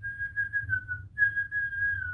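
A man whistling a tune in two long, high, pure-toned phrases, each dropping slightly in pitch at its end.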